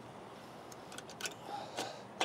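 A few faint metallic clicks and taps of a cotter pin being pushed into the latch of a truck tractor's pintle hook.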